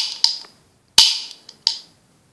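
Plastic toy cap gun dry-fired with no caps loaded: the hammer snaps down in sharp clicks, four in two seconds, the loudest about a second in, each with a brief ringing tail.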